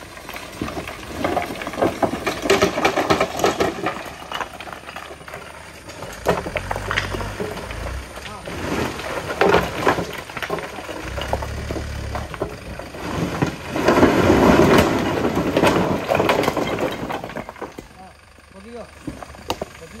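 Broken rock sliding off a tipper truck's raised bed and clattering onto a rock pile in many knocks, with the biggest slide coming about three-quarters of the way through. The truck's engine rises twice in short low bursts as the hydraulic bed tips higher.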